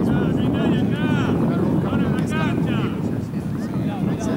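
Steady wind rumble on the camera microphone, with faint voices calling from the field.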